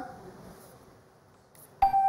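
A hushed pause, then near the end a sudden electronic ding with a steady ringing tone: the game show's answer-reveal sound as a score lights up on the survey board.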